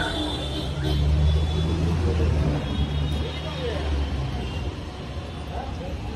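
A nearby motor vehicle's engine running as a low hum. It swells about a second in and fades after about four seconds, over general street noise.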